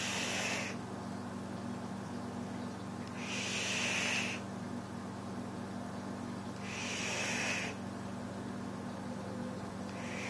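Vaping on a Dark Horse clone rebuildable dripping atomizer: breathy hissing bursts of about a second each, a few seconds apart, from drawing on the device and blowing out the vapour, over a steady low hum.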